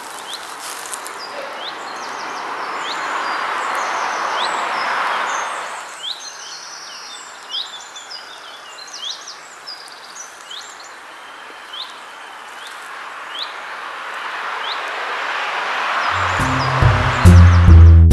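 Small birds chirping and singing over the steady rushing of a stream, a forest ambience recording; the water hiss swells and ebbs. Near the end, loud music with deep drum-like notes comes in and takes over.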